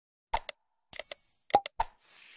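Sound effects of an animated like-and-subscribe reminder: two quick clicks, then a short bell ding that rings for about half a second, then three more quick clicks.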